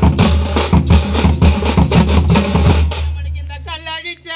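A thapset band's thappu (parai) frame drums beating a fast, dense rhythm over a strong bass. About three seconds in, the drumming drops back and singing takes over.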